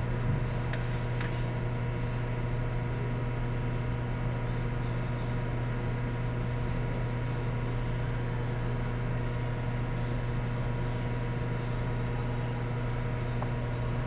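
Steady low electrical hum with fainter steady higher tones from the Digital Measurement Systems 880 vibrating sample magnetometer setup running, with a couple of faint ticks about a second in.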